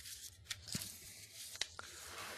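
Faint room tone in the lecture room, with a hiss and a few soft clicks and a light rustle.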